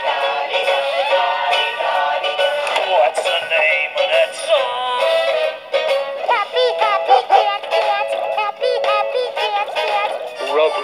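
A medley of short sung song excerpts with instrumental backing, the singers and tunes changing abruptly several times.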